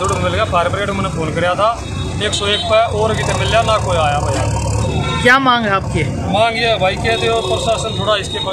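Men talking over steady road-traffic rumble, with a vehicle passing loudest in the middle.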